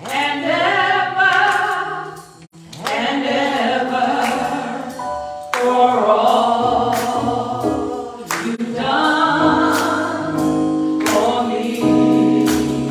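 A woman singing a gospel song into a microphone in long, held phrases, over low sustained accompaniment notes and sharp percussive hits.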